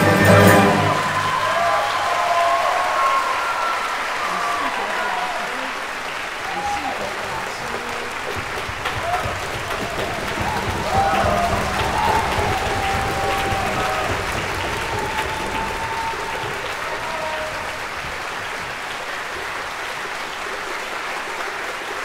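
A Chinese traditional orchestra's final chord cuts off about a second in. Sustained audience applause follows, with voices calling out among it.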